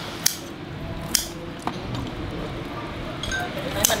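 Kitchen scissors snipping through cooked octopus tentacles: a few sharp metallic clicks, the two clearest about a quarter second and a second in, with fainter snips later.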